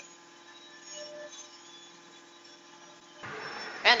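Quiet pause with only a faint steady hum. About three seconds in, the stand-up recording resumes with a soft hiss of room noise, just before the comedian starts speaking again.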